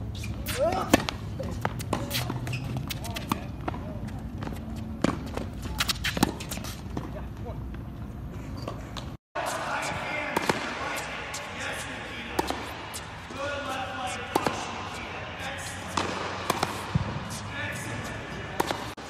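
Tennis balls struck by rackets and bouncing on a hard court, a string of sharp irregular pops. The sound cuts out for a moment about halfway through. After that the hits ring in a large indoor hall over indistinct background voices.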